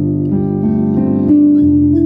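Piano playing held chords, with new notes entering every half second or so and a lower bass note coming in about a second and a half in.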